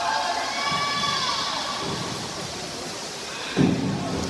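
Spectators cheering and shouting for the swimmers, several voices yelling over one another, with a sudden loud burst near the end.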